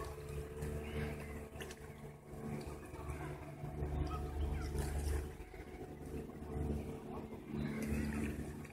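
A distant motor running with a low, steady hum, with wind rumbling on the microphone.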